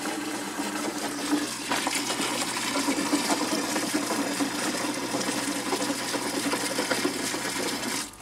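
Water running steadily from a water-filter housing's outlet into a plastic bucket, with a faint steady hum underneath.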